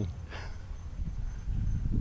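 Low, steady outdoor background rumble, with a brief faint voice about half a second in.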